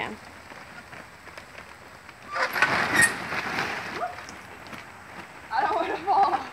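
Water spray pattering steadily onto a wet plastic tarp, with a louder burst of splashing about two and a half to three seconds in. A short burst of voice near the end.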